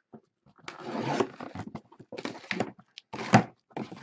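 Knife blade slicing the packing tape and cardboard of a shipping case, heard as several rough scraping strokes, with one sharp knock on the box a little past three seconds in.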